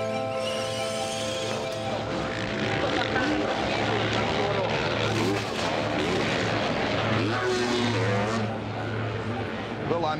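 Several motocross bike engines revving and changing gear on a race track, their pitches rising and falling over one another, over a low steady musical drone.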